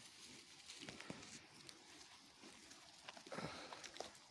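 Faint, scattered ticks and rustles of a flock of Latxa sheep grazing close by, cropping grass and stepping through it.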